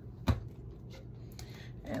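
A single sharp tap on the worktable about a third of a second in, as a hole point is marked or pressed into the paper signature against the ruler, followed by a few faint handling ticks over a low steady hum.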